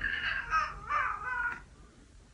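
A cat meowing through a pet gate: a quick run of high, bending calls lasting under two seconds.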